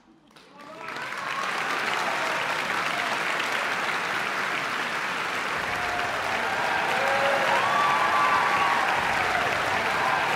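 Concert-hall audience applauding, swelling within the first second into steady clapping. A few voices call out over the clapping in the later part.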